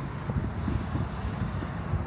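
Outdoor background noise: wind buffeting the microphone in an uneven low rumble, with the steady wash of road traffic beneath it.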